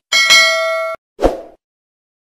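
Notification-bell ding sound effect of a subscribe animation: one bright ringing chime lasting just under a second that cuts off abruptly. A short, low thump follows about a second and a quarter in.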